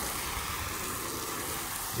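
Car Wash Cannon foam sprayer on a garden hose spraying soapy water onto the side of a pickup truck: a steady hiss of spray pattering on the body panels.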